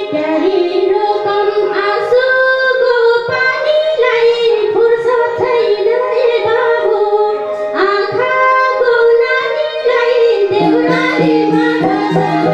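A woman singing a Nepali lok dohori folk song solo into a microphone over the backing instruments, in long held, wavering phrases. Near the end the voice drops out and the accompaniment carries on.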